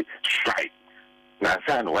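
A voice speaking in short phrases, broken by a pause of about a second in the middle, over a steady electrical hum that is heard alone in the pause.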